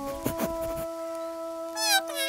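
A cartoon squirrel's high-pitched, wavering squeaky cry near the end, over background music with long held notes.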